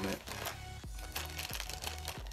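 Small plastic bag crinkling and rustling as hands dig in it for visor clips, with a few sharp clicks, over background music.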